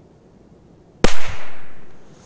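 A Korsar-1-type firecracker lying on snow exploding about a second in: one sharp, powerful bang followed by an echo that dies away over about a second.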